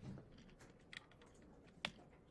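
Near silence with a few faint clicks at a computer, the sharpest one near the end, which advances the presentation slide.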